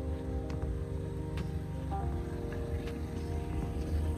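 Music playing, with a heavy bass line and held chords that change about two seconds in.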